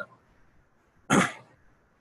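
A man clearing his throat once, a single short burst about a second in.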